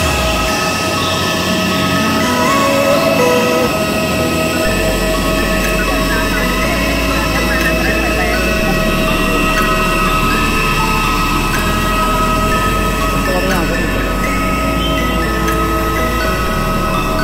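A parked jet airliner's steady whine and rumble, with several high tones held throughout, mixed with people's voices and faint background music.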